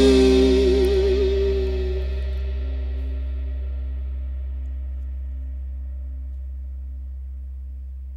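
Closing chord of a rock song ringing out: electric guitar with echo over a held bass note, one lead note wavering about a second in, the whole chord slowly fading away.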